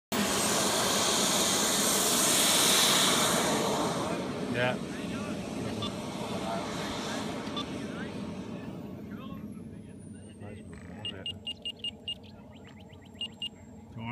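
Skymaster Avanti XXL radio-controlled jet's turbine engine running at power on its takeoff roll: a loud rushing noise with a steady high whine, fading as the jet moves away down the runway. Its high whine slides down in pitch about ten seconds in.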